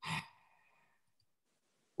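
A brief sigh, a short breathy exhale lasting under half a second, followed by silence.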